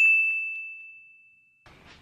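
A single bright, bell-like ding at one high pitch, fading away over about a second and a half, then faint room noise near the end.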